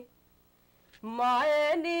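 A woman singing a Punjabi folk song unaccompanied. After about a second of near silence her voice comes in low and slides up into a long, wavering held note.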